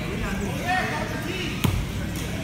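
A basketball bouncing once on a hardwood gym floor: a single sharp thud about one and a half seconds in.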